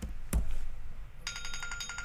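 A single click about a third of a second in. Then, from a little past halfway, an electronic ringtone sounds: a fast, even trill of high beeping tones that carries on past the end.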